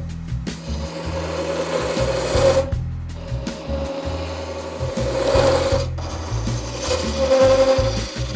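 Wood lathe running with a steady hum while a skewchigouge, a hybrid skew chisel and spindle gouge, cuts a curve into a spinning wooden spindle. The hiss of the cut swells and fades in about three passes.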